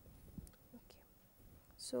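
Faint scratches and light taps of a felt-tip marker drawing lines on paper, with a voice starting to speak near the end.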